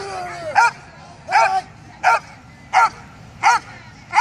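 Belgian Malinois barking in a steady run of short, loud barks, about one every 0.7 s, at a threatening decoy, with a man shouting "hey" among the barks.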